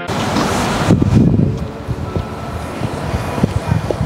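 Wind gusting across the camera microphone, strongest about a second in, with a few light knocks.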